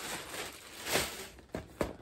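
Clear plastic bag rustling as a makeup bag is pulled out of it, then a few short knocks as the bag is set down on the table.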